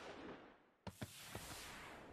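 Near silence: faint hiss, broken by a moment of dead silence about half a second in, followed by two faint clicks.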